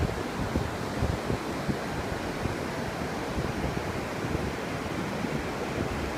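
Ocean surf washing on the beach as a steady rush, with wind buffeting the microphone in a low rumble.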